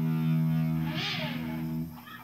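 Made-in-China 1998 Squier Stratocaster electric guitar played through an amplifier: a sustained low note rings steadily, with a brief scraping slide about halfway, then is cut off suddenly near the end.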